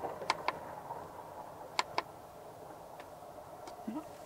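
Two quick pairs of small plastic clicks, about a second and a half apart, from a finger pressing the buttons on a solar charge controller's remote meter.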